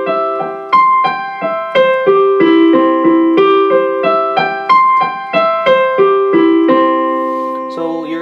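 Piano sound of a digital keyboard playing a C major arpeggio, notes struck evenly about three a second, climbing two octaves and coming back down. The last note, a low C, is held for about a second near the end.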